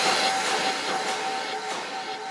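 Psytrance track in a breakdown: the kick drum and bassline have dropped out, leaving a rushing noise wash and a single held synth tone, with faint ticks about every half second, slowly getting quieter.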